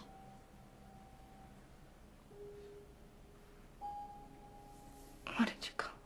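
Soft film-score music: a few sustained, pure single notes sounding one after another, with a short burst of voice near the end.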